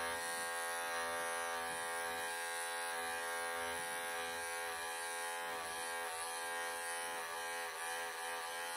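Wahl cordless pet clippers running steadily as the blade works through a tight, felted mat in a long-haired cat's belly coat. The motor's pitch dips briefly a few times as it meets the dense mat.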